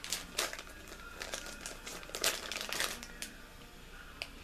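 Clear cellophane bag crinkling in the hands as a bagged wax melt is handled, in clusters of short crackles.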